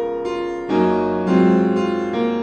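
Piano music played on a piano tuned by the traditional tuning-curve method, sounding as a tuning demonstration. Notes ring with their overtones, a new lower chord comes in about two-thirds of a second in, and a louder one a little after a second.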